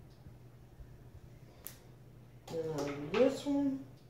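A woman's short two-part wordless vocal sound, like an "mm-hmm", about two and a half seconds in, its pitch rising into the second part. It comes after a single sharp click about a second and a half in.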